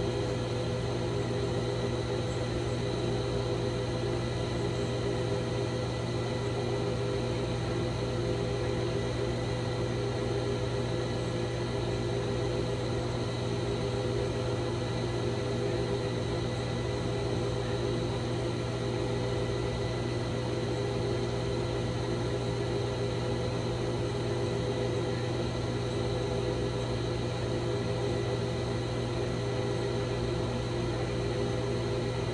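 A steady low hum with several faint, held higher tones above it, never changing in level or pitch.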